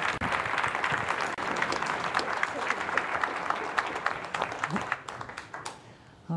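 Audience applauding, the clapping dying away about five seconds in.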